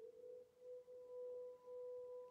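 Faint background music holding one sustained pure tone, gently swelling and fading, with a fainter overtone above it.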